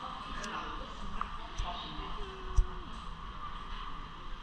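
Steady rushing storm wind and ferry noise, with faint indistinct voices and a few knocks, the loudest a low thump about two and a half seconds in.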